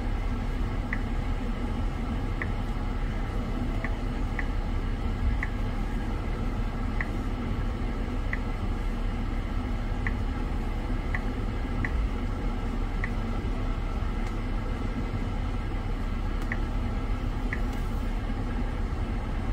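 Steady low rumble inside a car cabin, with about a dozen short high blips at uneven intervals from the infotainment touchscreen as menu items are tapped.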